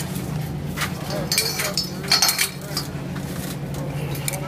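Metal chain links of a chain hoist clinking, in two short clusters about a second and a half and two seconds in, over a steady low hum.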